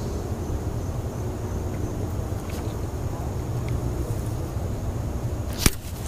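A light spinning rod swept up sharply to set the hook on a bite, a brief swish and snap about 5.7 seconds in, over a steady low rumble.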